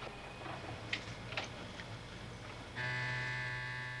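A few faint small clicks of metal parts being handled, then about three seconds in a steady electric hum starts: the motor of a guitar-pickup coil-winding machine.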